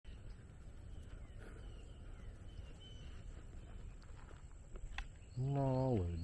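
Outdoor ambience with a low rumble and faint bird chirps. Then, in the last half-second, a man's drawn-out wordless voice, falling in pitch at its end, is the loudest sound.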